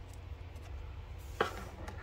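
A hard plastic toploader card holder being set down on a wooden table: one sharp click about one and a half seconds in, then a lighter tap, over a low steady hum.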